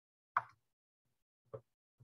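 Two brief taps, the first louder, about a second apart, heard through a video call's audio with dead silence between them.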